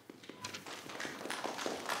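Faint scattered taps and rustling of people moving about a meeting room, such as footsteps and shuffling as a speaker leaves the podium. The taps grow a little louder toward the end, with a brief faint tone about half a second in.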